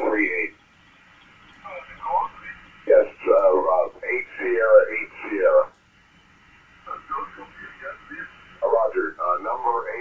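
Single-sideband voice traffic on the 20-metre amateur band heard through an ICOM IC-7851 transceiver: narrow, clipped-sounding voices cut off above about 3 kHz, in two stretches, with a faint hiss of band noise in the pauses.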